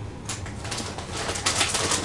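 Clear plastic bag and the plastic bait packs inside it crinkling and rustling as hands dig through them, a steady crackle of small clicks.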